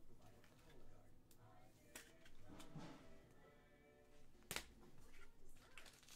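Near silence: faint background music, with a few soft clicks as trading cards are handled, the sharpest about four and a half seconds in.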